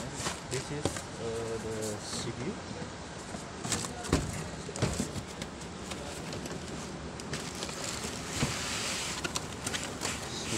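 Packing materials being handled: plastic air-cushion wrap and bags crinkling, and foam blocks and cardboard flaps knocking and scraping, with repeated sharp clicks and a denser stretch of crinkling near the end. A brief voice in the background about a second in.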